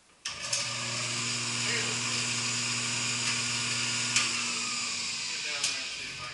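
Drill press electric motor switched on with a click, running steadily with a hum and a high whir for about five seconds. It is then switched off with another click near the end, its pitch falling as it spins down.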